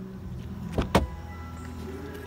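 Two quick sharp clicks from the car about a second in, over a steady low hum.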